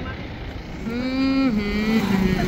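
Road and engine noise from inside a moving car. About a second in, a loud steady pitched tone starts and steps slightly lower in pitch half a second later.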